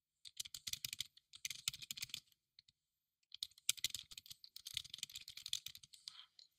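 Typing on a computer keyboard: two runs of rapid keystrokes, each about two seconds long, with a pause of about a second between them.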